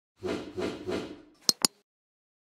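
Sound effects of an animated subscribe-reminder graphic: three quick whooshes, each swelling and fading, then two sharp clicks close together about a second and a half in.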